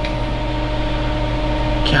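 Steady machine hum with several steady tones, even in level, with nothing sudden standing out.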